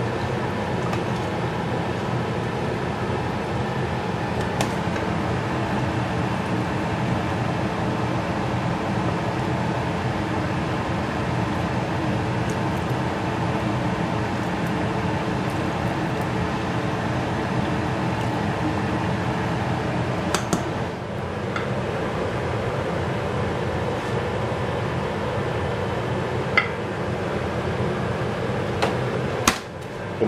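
Steady whirring hum of a kitchen fan, with a few faint clinks of utensils against a pot or bowl.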